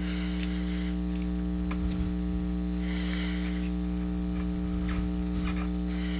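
Steady electrical mains hum, with a few faint soft clicks and brief rustles over it.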